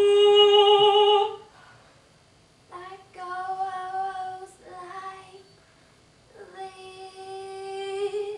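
A young female voice singing long held notes unaccompanied, in three phrases with short pauses between them.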